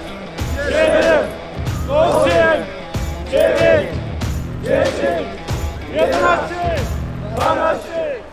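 A group of voices shouting out push-up counts in unison, one number about every second, over background music with a steady low beat.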